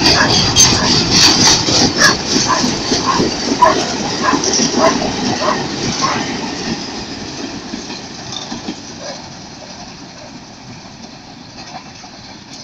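Empty grain hopper cars of a long freight train rolling past close by, wheels clattering and knocking in a repeating rhythm. The noise fades over the second half as the end of the train passes and moves away.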